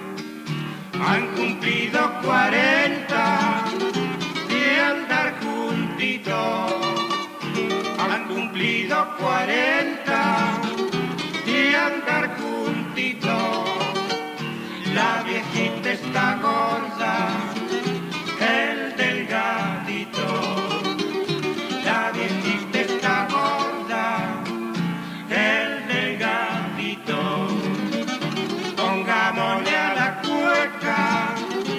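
Two acoustic guitars playing an instrumental passage of a cueca from Cuyo.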